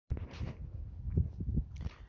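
Low, uneven wind rumble on a phone's microphone, with irregular soft bumps from the phone being handled.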